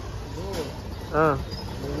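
Steady low rumble of street traffic, with two short male voice exclamations over it.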